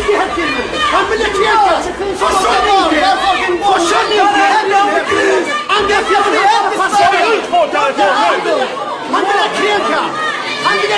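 Several people talking over one another at once, a loud, continuous jumble of overlapping voices.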